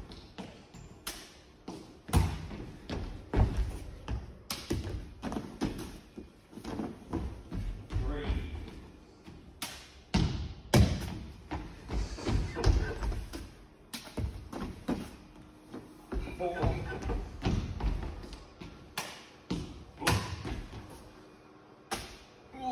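Running footsteps and repeated thuds on a wooden hall floor, echoing in a large hall.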